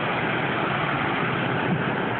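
Steady rushing noise of cars driving through floodwater on a flooded street, their tyres throwing up spray.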